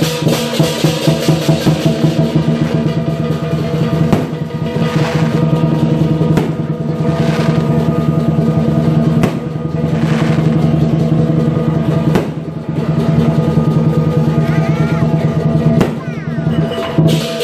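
Lion dance percussion: a large Chinese lion drum beaten in a fast roll for about four seconds, then in heavier spaced beats, under continuously ringing cymbals and gong.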